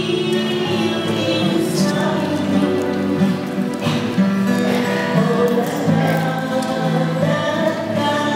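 A woman singing a religious song to acoustic guitar accompaniment, with a choir singing along.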